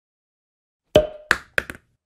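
Short designed pops of an animated app-logo intro: four quick hits about a second in, the first with a brief ringing tone behind it.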